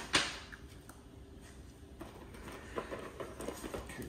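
A short, sharp rustle of a paper instruction sheet just after the start, then quiet handling noise with a few faint clicks as a coiled string-light cord is lifted from its cardboard box.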